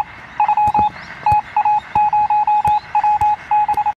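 Electronic beeping sound effect: a single high tone keyed on and off in rapid, irregular short and long beeps, much like Morse code, with sharp clicks scattered among them.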